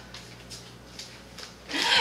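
Faint rustling and light knocks of a plastic mailer bag and a cardboard shipping box being handled, over a low steady hum.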